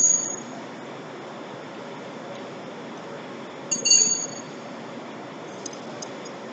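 Two sharp metallic clinks with a brief high ring, one right at the start and another about four seconds in, from metal parts striking each other while a truck wheel is worked on by hand. Steady low shop background noise throughout.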